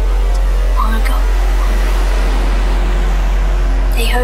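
Trance and hard trance dance music playing from a DJ mix, loud and steady with a heavy continuous bass.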